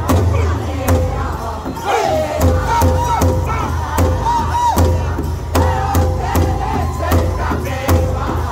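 Powwow drum group singing a traditional song: several men in high voices over a large shared drum struck together in a steady beat. The beat thins out for a few seconds in the middle while the voices carry high, falling lines, then picks up again.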